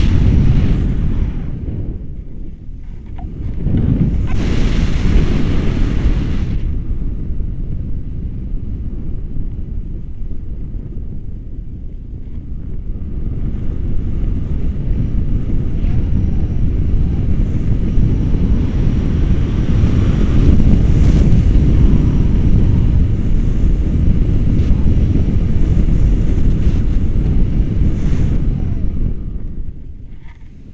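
Rushing air buffeting the camera microphone in flight under a tandem paraglider: a loud, low rumble. It eases briefly a few seconds in and again near the middle, has a hissier gust about four seconds in, and is at its strongest through the second half.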